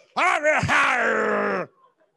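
A man's long, wordless vocal groan into a handheld microphone, held for about a second and a half, pitch sinking slightly before it stops abruptly.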